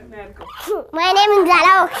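A young child's high-pitched voice speaking in short bursts, then a longer phrase about a second in.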